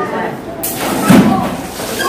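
A water-filled rubber balloon bursts as it is pricked with a pin, about half a second in, and its water splashes down.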